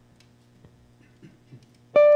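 Near silence with a faint low hum and a few soft ticks, then just before the end a chord on a hollow-body archtop guitar is struck loudly and begins to ring.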